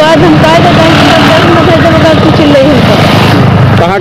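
A woman's voice speaking over a steady rumble of road traffic.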